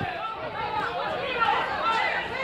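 Ringside boxing crowd: many voices talking and calling out at once, overlapping into a continuous chatter.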